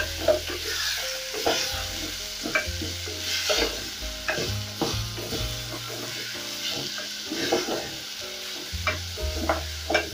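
Beef cubes and onions frying with a steady sizzle in an aluminium pot while a wooden spoon stirs them, with irregular scrapes and knocks of the spoon against the pot every half second to a second.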